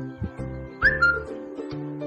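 Background music of plucked strings over a repeating bass line. About a second in comes a short, loud whistle-like note that rises and then holds briefly.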